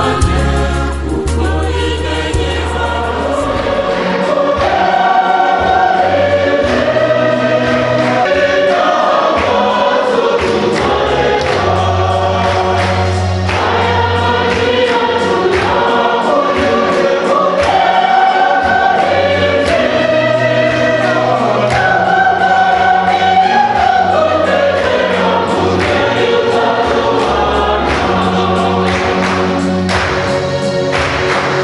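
Choir singing gospel-style Christian music, the voices holding long notes over sustained bass notes that change every few seconds.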